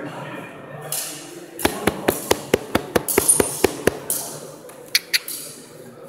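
Steel cut-and-thrust sword blades clashing in a quick flurry of about a dozen sharp strikes, roughly five a second, then two more strikes about a second later.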